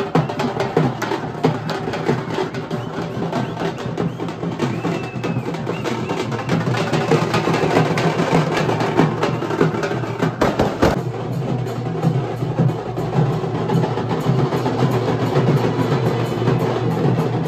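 A group of stick-played street drums beating a fast, dense rhythm that runs on without a break.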